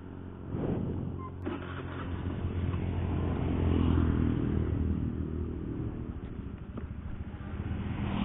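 Honda Beat FI scooter's single-cylinder engine pulling away and accelerating, growing louder over the first few seconds, then easing off as it cruises, rising again near the end.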